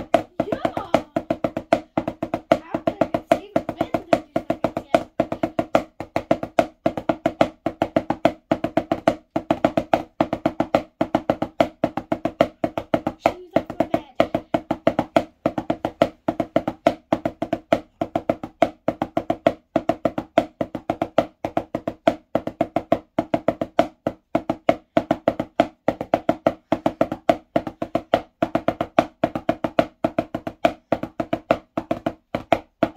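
Wooden drumsticks on a drum practice pad playing five-stroke rolls over and over: quick groups of taps repeating in a steady rhythm.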